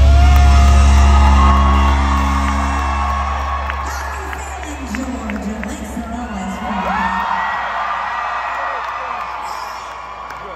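A live band's final chord ringing out and fading, with a loud low bass note held until it stops about seven seconds in. The crowd whoops and cheers over the fading sound.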